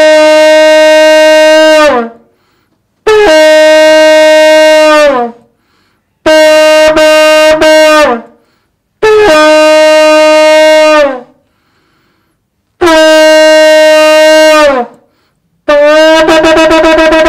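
A shofar (ram's horn) blown in a series of about five long blasts, each roughly two seconds, rising at the onset, holding a steady note and sagging in pitch as the breath runs out. The third blast is broken by two short breaks into three parts, and another blast begins near the end.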